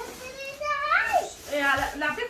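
Speech: a child's high voice calls out in one drawn-out rise and fall, then goes on talking.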